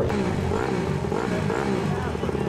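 Dirt bike engines running, their note rising and falling a little.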